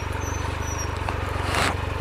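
Triumph Explorer XCa's inline three-cylinder engine idling steadily, with an even low throb and no revving. A short rush of noise comes in near the end.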